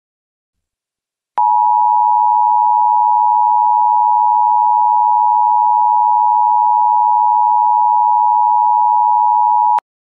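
Emergency Alert System two-tone attention signal: a loud, steady tone of two close notes sounded together. It starts about a second and a half in, holds unchanged for about eight seconds and cuts off abruptly just before the end.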